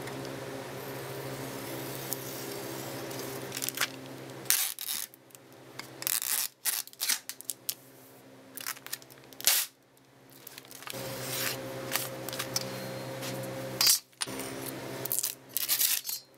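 Clear packing tape being pulled off the roll of a handheld tape dispenser in two long strips, each a steady buzzing rasp lasting a few seconds. Between and after the pulls come clicks and clatter as the tape is cut on the dispenser's blade and a metal ruler and knife are handled on the bench.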